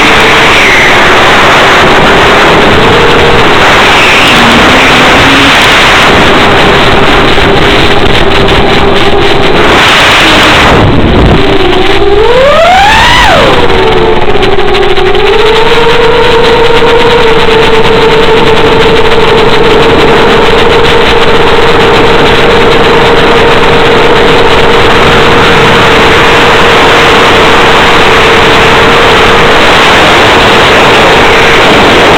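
Electric motor and propeller of a battery-powered FPV model airplane, heard from on board as a steady whine under a heavy hiss of wind noise. About eleven seconds in the pitch swoops sharply up and back down, then holds slightly higher.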